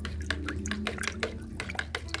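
Metal spoon stirring water and oil in a plastic jug: quick, irregular clicks and scrapes of the spoon against the jug, with the water sloshing.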